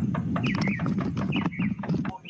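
Several quick raps of knocking on a front door, with small birds chirping over a low steady rumble of outdoor noise.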